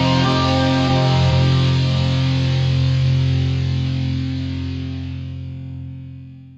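The final chord of a rock song on distorted electric guitar, held and slowly fading out over the last few seconds.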